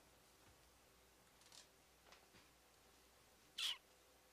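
Near silence: room tone, with a faint short noise about a second and a half in and one brief hiss near the end.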